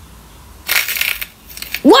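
A hard, glossy black ball being cracked open between the fingers: a short burst of crisp crackling, about half a second long, as its shell breaks.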